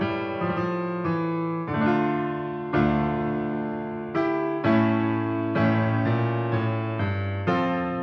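Slow piano music: chords struck and left to fade, with a new chord about every second.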